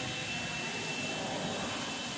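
Steady background noise: an even hiss with a faint, thin, high steady whine, with no distinct strikes or changes.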